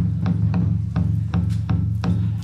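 Live Afro-percussion band music: a held low bass note under sharp hand-drum and percussion strikes, roughly three a second.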